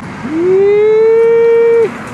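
A person's loud, long held shout. The pitch scoops up at the start, holds steady for about a second and a half, then cuts off suddenly.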